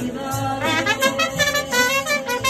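Mariachi band playing: violins and trumpets carry the melody over a plucked bass line and strummed guitars in a steady rhythm.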